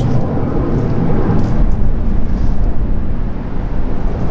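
Loud, steady low rumble of outdoor background noise, with no clear tones or separate events.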